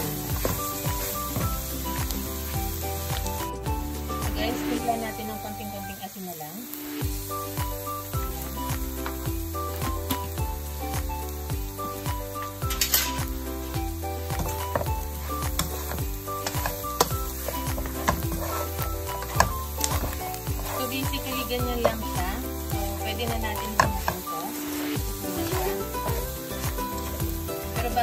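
Pork spare ribs sizzling as they stir-fry in a nonstick pan, with a spatula scraping and turning them now and then. Background music with a steady bass line plays throughout.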